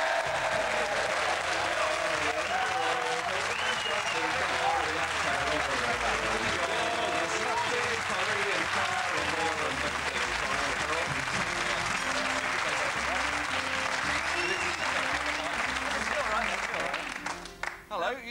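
Studio audience clapping and cheering continuously, dying away near the end.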